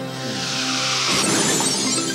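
Synthesized title music with a glass-shattering sound effect that swells in the first half and breaks up around the middle, over sustained music tones.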